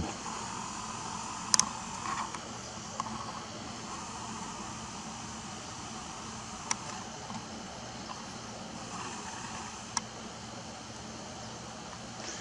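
Steady faint background noise with a low hum, broken by three sharp clicks, about one and a half, seven and ten seconds in.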